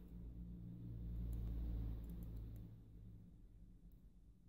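A few faint, small clicks of a thin steel wire probing inside a half euro lock cylinder, over a low steady hum.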